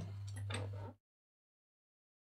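Faint room tone with a steady low electrical hum and a few light clicks, cutting off to complete silence about a second in.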